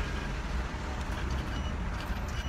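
Steady low rumble of a car engine running, heard from inside the car's cabin.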